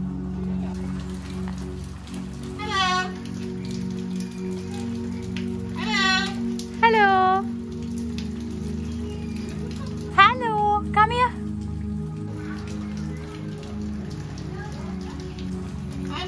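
A sulphur-crested cockatoo giving about five short, pitched, voice-like calls, the two loudest close together about ten seconds in, over steady background music.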